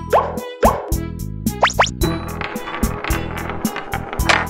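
Cartoon sound effects over children's background music with a steady beat: two short rising pops, like plops, in the first second, a quick pair of upward whistles a little before two seconds in, then a noisy rolling sound as a ball runs along a track in the last two seconds.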